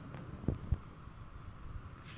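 Quiet room noise with two short, soft knocks close together about half a second in: small handling noises.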